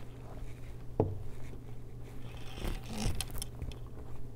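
Handling noises as items are pulled out of a quilted leather handbag: rustling and scraping of leather and small objects, with a sharp click about a second in and a denser burst of rustling near three seconds.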